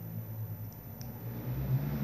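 Low steady hum under faint room noise, with one small click about a second in.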